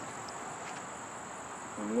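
A steady, high-pitched insect chorus chirring without a break.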